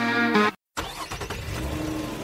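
A radio-show music jingle ends on a held chord that cuts off about half a second in. After a brief dead gap, a quieter steady rumble like a car's interior starts, with faint soft held tones over it.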